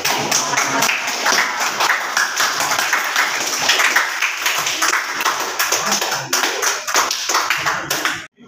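Audience applauding, many hands clapping steadily, then cutting off suddenly at the end.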